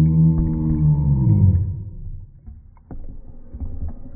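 A long, low, muffled moaning call that holds one pitch, then drops and fades about one and a half seconds in. A few light knocks and a faint wash of water follow.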